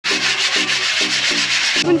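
Several people hand-sanding the steel bars of an outdoor pull-up frame to prepare them for painting: quick rasping rubbing strokes, about four a second, that stop abruptly near the end, followed by a laugh.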